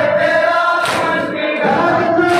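A noha, a Shia lament, chanted by male reciters over microphones, with a crowd of men joining the refrain. About a second in comes a sharp slap of hands beating on chests (matam), which repeats roughly every second and a half.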